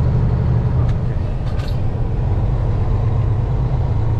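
Peterbilt semi truck's diesel engine heard from inside the cab, a steady low drone. About a second in it changes to a slightly different, softer rumble, with one brief sharp noise shortly after.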